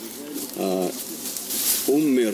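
A dove cooing once, briefly, a little over half a second in.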